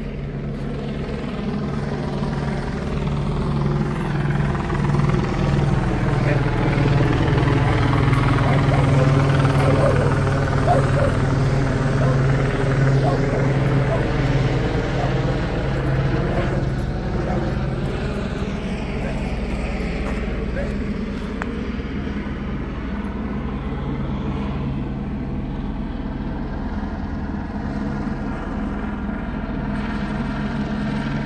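Police helicopter circling overhead, a steady rotor and engine drone that grows louder for the first ten seconds or so and then slowly fades.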